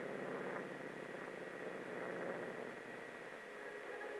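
A steady low drone under hiss on an old film soundtrack.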